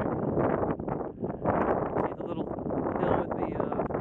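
Wind buffeting the camera microphone, rising and falling in gusts with a brief lull just after a second in.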